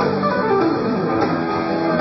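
Live electric guitar lead over bass and drums, with a quick descending run of notes about half a second in.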